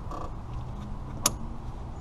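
A single sharp click a little past one second in: the high-side quick-connect coupler on an A/C manifold gauge hose snapping onto the high-side service port, the sign it has latched on.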